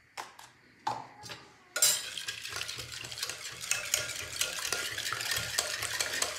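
A wire whisk beating runny cake batter in an enamel pot: fast, steady swishing with the wires ticking against the pot's sides, starting about two seconds in after a few separate knocks.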